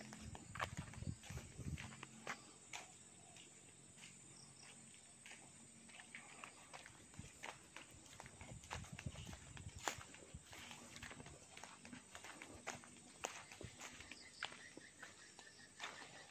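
Faint, irregular footsteps and scuffs of a person walking on bare ground, over quiet outdoor background.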